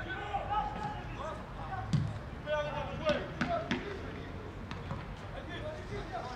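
Football being kicked on a grass pitch, with one sharp kick about two seconds in and a few lighter knocks a second later, among players' shouts.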